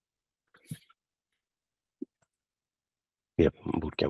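Near-silent video-call line with a couple of brief faint noises, then a voice saying "Yep" near the end.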